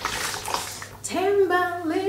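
About a second of hissing noise, then a woman's voice singing a held, slowly wavering tune.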